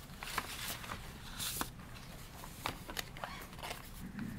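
Paper rustling and handling close to a microphone: scattered light clicks and taps, with one longer, louder rustle about a second and a half in.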